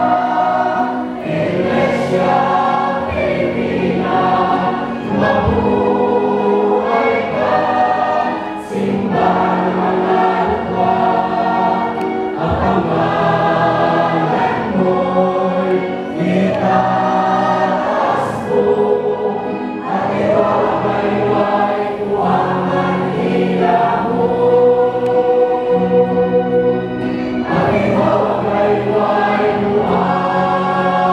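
A church choir singing, many voices together on long held notes.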